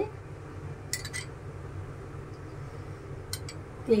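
Metal spoon clinking against a glass bowl while oil is spooned into a pan: a short cluster of clinks about a second in and another single clink a little after three seconds, over a low steady hum.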